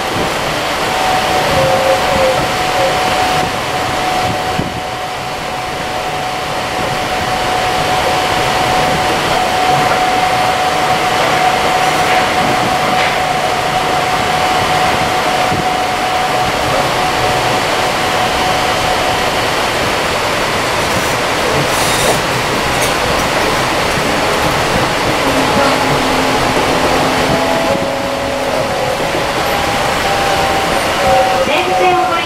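Interior running noise of a Seibu Leo Liner 8500-series rubber-tyred people-mover car travelling along its guideway, with a steady whine through the first half. The noise grows louder as the car runs through a tunnel midway, and shifting tones come in near the end.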